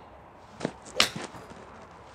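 Callaway XR Pro iron striking a golf ball off a hitting mat: one sharp crack about a second in, with a smaller knock just before it and another just after. It is a cleanly struck shot, a "great hit".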